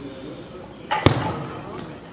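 A weightlifter's feet stamping onto the lifting platform as she drops under the barbell in a jerk: one sharp thud about a second in, with a short echo after it.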